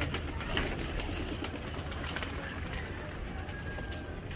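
Domestic flying pigeons at a rooftop loft: a few sharp wing claps and flutters as birds take off, over a steady outdoor background.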